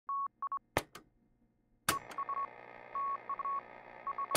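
Intro sound effect: Morse-code-style beeps on a single high tone, short and long, with a sharp click twice. From about two seconds in, a faint hiss and low hum run under the beeps.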